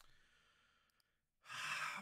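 Near silence, then about a second and a half in, a short breathy sigh from a man, half a second long.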